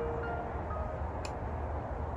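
Sparse chime notes sounding one after another at different pitches over a steady low rumble, with a faint click a little past one second in.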